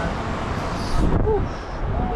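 Wind rumbling on the microphone, louder about a second in, with brief snatches of voices.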